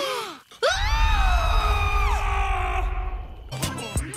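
Young girls' cartoon voices squealing with excitement: a short falling cry, then one long held squeal lasting about a second and a half. Background music with a heavy bass plays under it.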